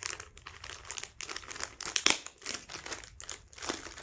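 Clear plastic packaging crinkling and rustling in irregular crackles as hands handle it, with one sharper crackle about two seconds in.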